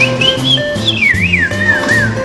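Background music with a high whistle over it. The whistle wavers and then swoops down in pitch in the second half, bird-like.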